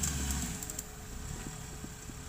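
Off-road vehicle engine running with a steady hum; a heavier low rumble drops away about half a second in.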